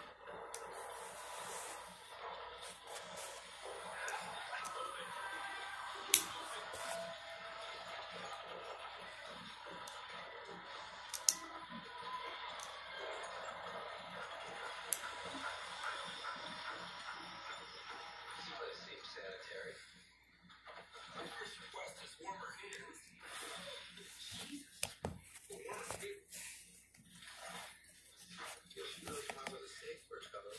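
Speech with music in the background, with a few sharp clicks, for about the first two-thirds; then it drops, leaving light plastic clicks and rustles of Lego pieces being handled.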